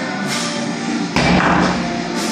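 A 130 lb circus dumbbell comes down from overhead onto the rubber floor mat, a single heavy thud about a second in, with rock guitar music playing throughout.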